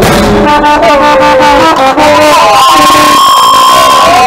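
Carnival parade band's brass horns playing a melody over drumming, ending on one long held high note.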